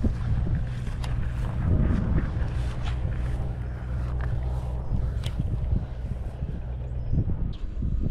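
Steady low rumble of wind buffeting the microphone, with a few light clicks as a baitcasting rod and reel are worked.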